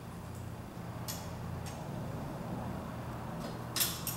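Metal front handle of a saddle cart being extended and pinned by hand: a few light clicks, the sharpest near the end, over a steady low hum.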